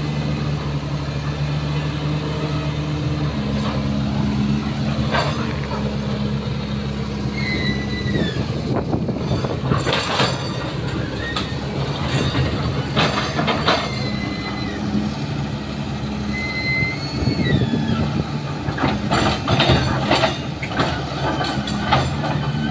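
Caterpillar 320C hydraulic excavator's diesel engine running under load, its pitch shifting as the hydraulics work, while the bucket smashes a concrete block wall. Repeated crashes and scraping of breaking concrete and rubble, with a cluster of crashes near the end and a few short high squeals.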